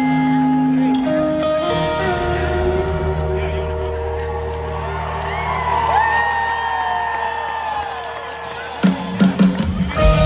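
A live band plays a song intro through a large outdoor concert PA, with held chords and guitar. A crowd cheers with whoops over the music for a few seconds midway, and drum hits come in near the end.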